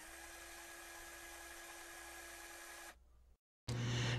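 Faint steady hiss with a low electrical hum, cutting off abruptly to silence about three seconds in.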